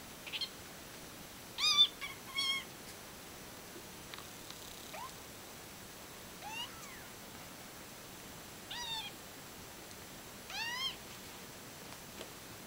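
A kitten mewing in short, high calls, about seven of them spread out, several rising in pitch, the loudest about two seconds in, while an older cat pins it in play-wrestling.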